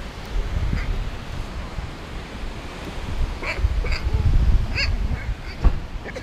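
Low rumbling of clothing rubbing against a body-worn camera while walking, with a few short high chirps in the second half and a single sharp click near the end.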